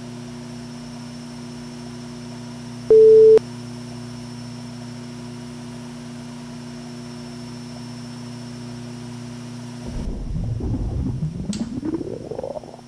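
Steady low electrical hum, broken about three seconds in by a short, loud pure-tone beep. Near the end a low rumble comes in and rises steadily in pitch.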